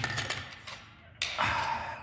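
Unpowered angle grinder handled as its disc is being changed: light metallic clinks, then a short scraping noise a little over a second in.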